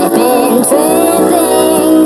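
Sped-up pop song: a sung vocal holds a long note over the backing music.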